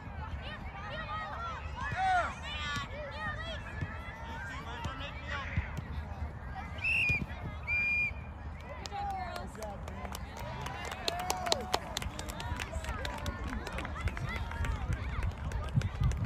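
Scattered shouting and calling voices of players and sideline spectators during an outdoor youth soccer match, distant and overlapping. Two short, steady high-pitched tones sound about a second apart around the middle.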